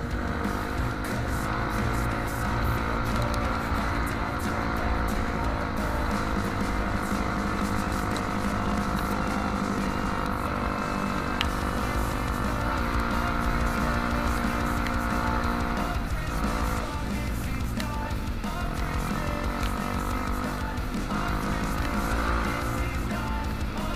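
Trail motorcycle engine running under way, its pitch climbing and falling a few times with the throttle, over a heavy wind rumble on the microphone, with music playing along.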